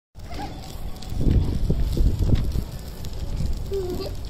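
Wind buffeting the microphone in gusts, a low rumble that is loudest between about one and two and a half seconds in.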